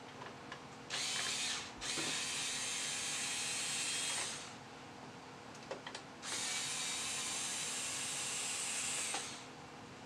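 A cordless drill or electric screwdriver runs in three bursts of about one, two and three seconds, backing out the screws that hold a CPU cooler.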